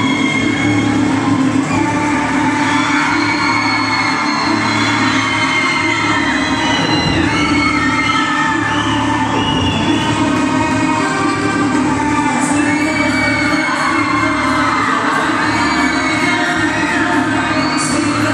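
An audience cheering, shouting and whooping over loud dance music, without a break.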